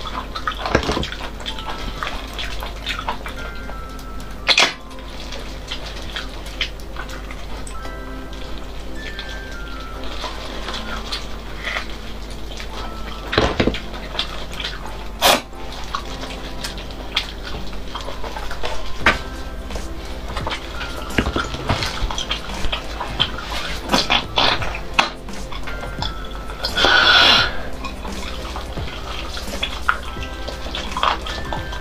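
Wet close-mic eating sounds of braised marrow bones being torn apart, bitten and sucked: scattered sharp wet smacks and clicks, with a loud slurp about a second long near the end, over background music.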